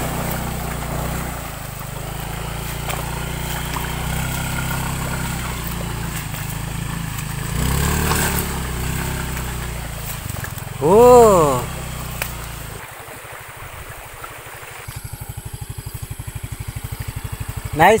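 Motor scooter engine running as the scooter is ridden through shallow floodwater, with water splashing. A person gives one loud rising-and-falling whoop about eleven seconds in. In the last few seconds the scooter's engine is heard close up, running with an even, rapid pulse.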